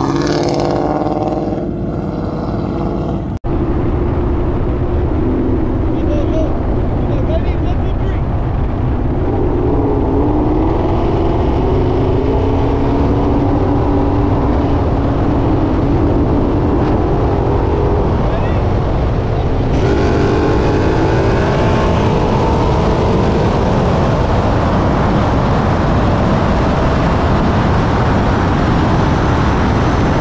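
A V8 performance car with a 10-speed automatic accelerating hard at full throttle, its engine pitch climbing through the gears as speed builds from about 60 to over 130 mph. It is heard from inside the car under heavy wind and road noise.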